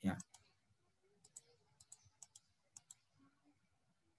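Faint computer mouse clicks, about nine sharp clicks, many in quick pairs, a second or so in, while a slide-show right-click menu is being opened. A short bit of speech comes at the very start.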